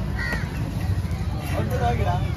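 Outdoor market din: background voices over a steady low rumble, with a short high call about a quarter second in.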